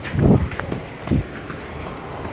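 Street ambience with a steady low rumble and wind buffeting the microphone, with two brief voice calls, one near the start and one about a second in.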